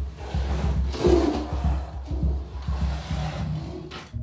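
White tigers growling in their den, loudest about a second in, while the metal cage door is unlatched to let them out.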